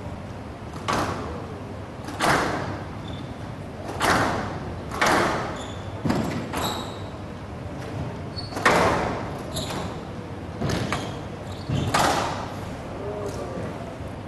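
Squash ball being struck by rackets and hitting the walls of a glass court during a rally: a sharp thud every second or two, each echoing briefly in the hall.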